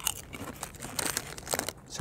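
A potato chip crunching as it is chewed, in irregular crisp crackles, mixed with the crinkle of the foil chip bag being handled.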